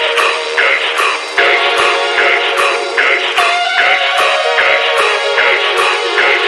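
Intro of a deathstep electronic track: a fast synth pattern pulsing evenly about every half second, thin in the low end with no heavy bass yet.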